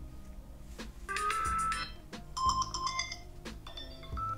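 iPhone alarm tones previewing through the phone's speaker, two short electronic tone patterns one after the other as different tones are tapped in the list. The first, about a second in, is a quick run of high pulsing notes; the second, from about two seconds in, is a pattern of bright beeps. They play at the raised ringer-and-alerts volume.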